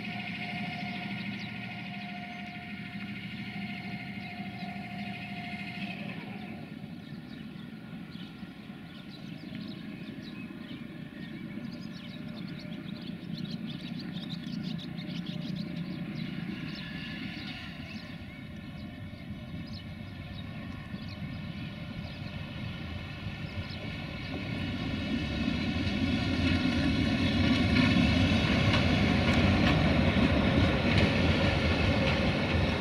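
Diesel shunting locomotive engines running with a steady hum, and a thin steady whine that stops about six seconds in. In the last few seconds a diesel shunter passes close by and the engine grows louder.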